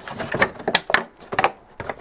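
Hard plastic clicks and knocks as a tail-light bulb carrier is pushed back into its plastic rear light cluster housing, several sharp taps spread through the two seconds.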